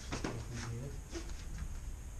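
Feet stepping on the practice mat and the rustle and swish of keikogi and hakama as two aikido practitioners move through a technique: a few sharp taps and swishes, the loudest just after the start. A steady low hum lies beneath.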